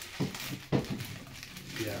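Two light knocks, the second louder, as a small vinyl figure is set down and fitted onto a display shelf.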